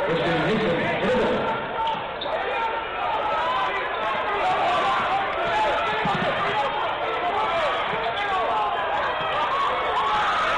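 Arena sound of a basketball game: a basketball bouncing on the hardwood court amid a steady hubbub of voices.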